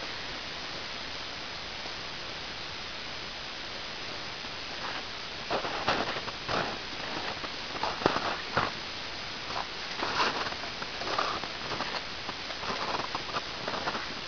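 Footsteps crunching in snow, irregular, beginning about five seconds in over a steady hiss.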